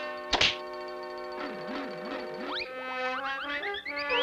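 A single cartoon axe chop, a sharp thunk about a third of a second in, followed by cartoon background music: held notes, a wobbling tone in the middle, and quick climbing notes near the end.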